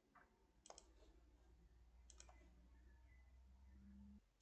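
Near silence with three faint, sharp clicks at the computer while a plot is run, the clearest a little under a second in, over a faint low hum.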